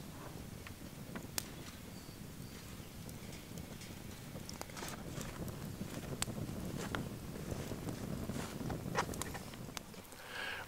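Campfire burning in a stone fire ring, with scattered sharp crackles and pops over a low steady rush.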